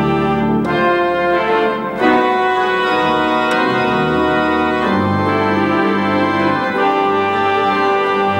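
Pipe organ music: full sustained chords, with a loud new chord about two seconds in and deep pedal bass notes entering about five seconds in.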